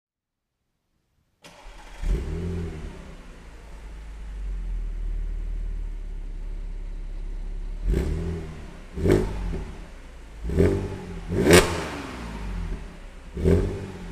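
Audi S4's supercharged 3.0 V6 starting about a second and a half in, flaring briefly, then idling through its quad-tip exhaust. From about 8 s it is blipped five times, each rev rising and falling quickly, the loudest about 11.5 s in.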